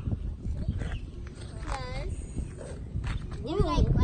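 A child's wordless voice: a short sound that dips and rises in pitch about two seconds in, and another brief one near the end, over a low, steady rumble.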